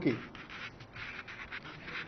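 Faint, irregular rustling of paper being handled.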